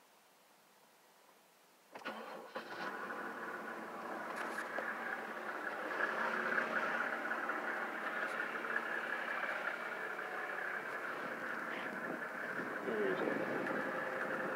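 Mercedes-Benz OM606 inline-six diesel in a 1997 E300 starting from stone cold: about two seconds in it cranks briefly and catches almost at once, then settles into a steady idle. No long cranking, the sign of a healthy diesel.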